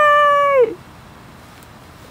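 A woman's high-pitched excited squeal, held for about a second and falling off at the end, in reaction to a gift being shown.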